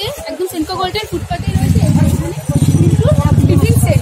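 Busy city street: a low traffic rumble under the voices of passers-by.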